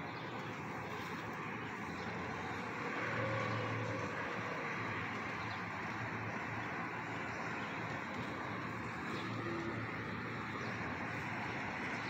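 Steady car noise heard from inside the cabin of a moving car, with a low hum that swells slightly about three seconds in.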